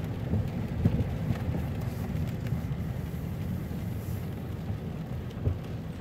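Steady low rumble of a car's engine and tyres heard from inside the cabin while driving, with a few faint knocks.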